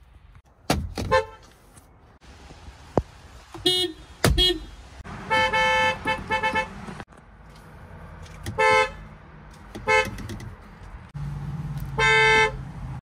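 Volkswagen car horns, heard from inside the cabin, sounding in a string of short honks with one longer blast about five seconds in, followed by quick taps. A few sharp thumps fall between them.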